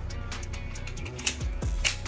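Background music, with short sharp clicking accents over a steady low bed.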